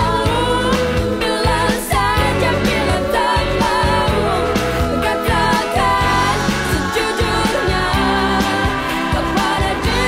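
Pop song with a sung vocal line over a steady bass beat.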